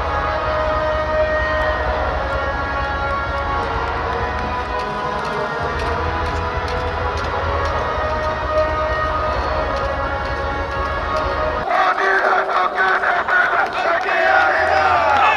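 Background music with a steady bass line. About twelve seconds in, a crowd of fans breaks into loud cheering and shouting.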